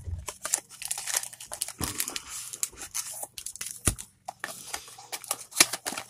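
Cardboard trading-card box being torn open and its contents pulled out by hand: crinkling and tearing of packaging with a quick run of irregular sharp clicks and snaps, the loudest snap about two-thirds of the way through.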